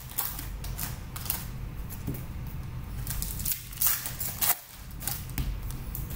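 Foil trading-card packs being handled and torn open by hand: irregular crinkling crackles and clicks of the wrapper and cards.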